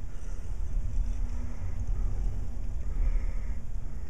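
Steady low rumble with a faint hum underneath, with no distinct sound from the fine wire being threaded.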